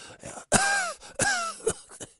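A man's voice acting out two strained, breathy cries about two-thirds of a second apart, each rising and then falling in pitch, like pained, panicked gasps.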